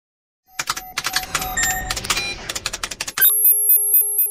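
Electronic sound effects of an animated logo intro: a rapid flurry of sharp synthetic clicks and ticks, then from about three seconds in a pulsing electronic beep pattern, about four to five pulses a second.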